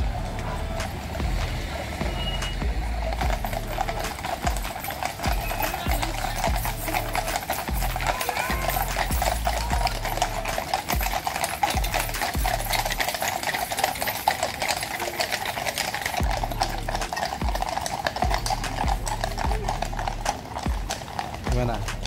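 Many shod horse hooves clip-clopping on the road as a column of cavalry horses walks past at a steady pace, mixed with background music.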